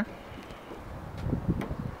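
Low, uneven rumble of a handheld camera's microphone being moved and handled, with light rustling and a few faint knocks.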